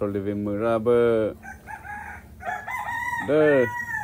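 A rooster crowing: one long call starting about halfway through that holds its pitch and breaks off near the end, with a man talking at the start.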